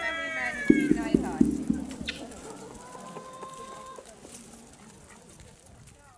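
A rooster crowing, the call falling in pitch and ending about half a second in, followed by a few short low calls and voices as the sound fades away.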